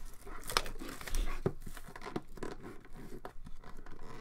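Plastic shrink wrap being torn and crinkled off a sealed cardboard box of hockey cards, in short irregular rips, the sharpest about half a second in.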